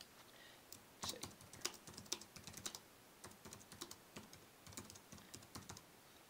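Faint typing on a computer keyboard: a quick, uneven run of keystrokes starting about a second in, typing out a short sentence.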